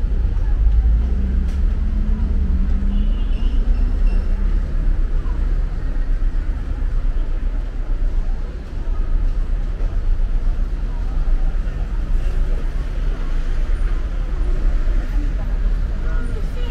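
Busy street ambience: a steady low rumble of road traffic, with passers-by talking in the background.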